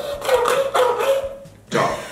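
A person's voice holding one long, high, slightly wavering vocal sound for about a second and a half, then a loud 'Ćao!' near the end.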